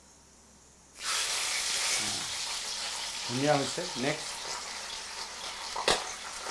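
Food tipped into hot oil in a wok: the sizzling starts suddenly about a second in and carries on steadily.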